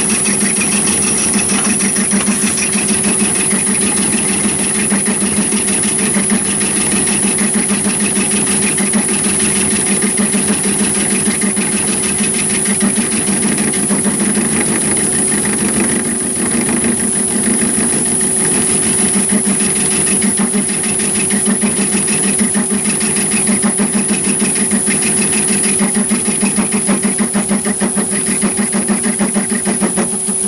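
Myford ML7 lathe running with the tool taking a turning cut along a spinning metal bar: a steady, loud machine noise with a fast pulsing low hum and a steady high-pitched whine.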